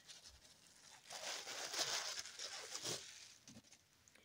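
Rustling and crinkling as a curly wig and its packaging are handled, loudest from about one to three seconds in.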